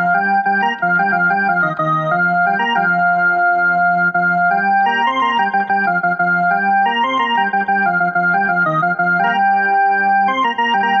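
Portable electronic keyboard playing a slow melody of long, held notes over a lower moving line.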